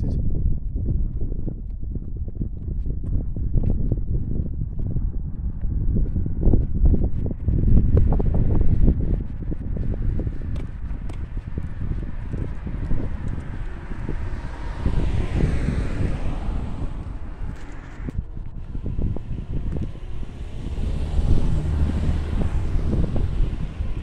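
Wind buffeting the microphone, a low rumble that rises and falls unevenly. Cars pass on the road, one swelling and fading a little past the middle and another near the end.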